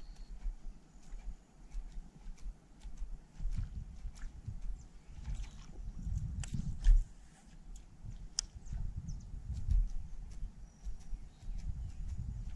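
Gusty rumble of wind on a GoPro microphone mounted on a kayak, with scattered light knocks and clicks and one sharper thump about seven seconds in.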